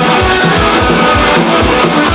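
Live rock band playing a song: guitar over a steady, driving beat in the low end.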